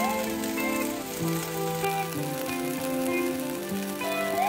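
Thin strips of beef sizzling in a nonstick frying pan, a steady hiss, under soft background music.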